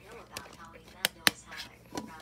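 Sharp plastic clicks from a two-disc DVD case being handled as a disc is pulled off its hub, the two loudest close together about a second in. Muffled voices talk in the background.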